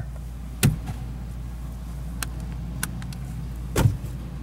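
A kick against the passenger-side junction box panel makes a sharp thump about half a second in, followed by a few light clicks and another knock near the end, over a steady low hum. The jolt brings the instrument lighting power back, a sign of the failing TNS relay built into the junction box.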